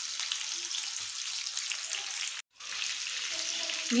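Beef koftas sizzling as they shallow-fry in hot oil in a pan, a steady hiss that breaks off for a moment about halfway through.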